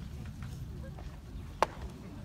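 A pitched baseball smacking into the catcher's mitt: one sharp pop about one and a half seconds in, over a low background hum from the ballpark.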